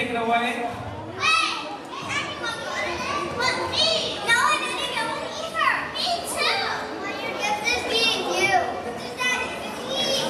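Many children's voices at once: high-pitched chatter, calls and squeals overlapping, in a large hall.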